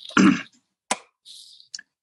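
A person clears their throat once, briefly, just after the start; a faint click and a short soft hiss follow.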